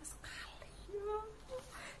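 A woman's soft, breathy voice: the whispered end of a word, then a short rising hum about a second in and another breathy sound near the end.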